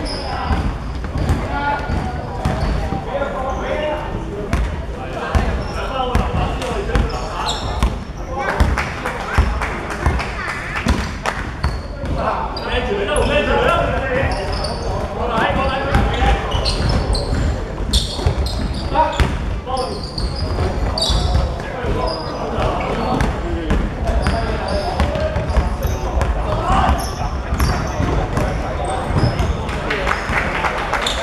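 Basketball game play on a hardwood court in a large gym hall: the ball bouncing again and again as it is dribbled, with players calling out to each other throughout.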